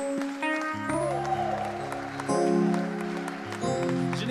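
Electric keyboard playing slow, held chords over a deep bass, moving to a new chord about every second and a half, while applause dies away at the start.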